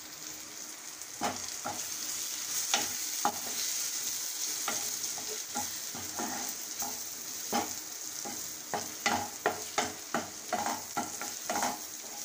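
Onion-tomato masala with freshly added spice powders sizzling in oil in a stainless steel kadai, with a wooden spatula stirring and scraping against the pan. The scraping strokes start about a second in and come faster near the end.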